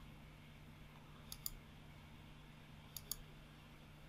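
Two faint computer mouse clicks, each a quick press-and-release pair, about a second and a half apart, over a faint steady low hum.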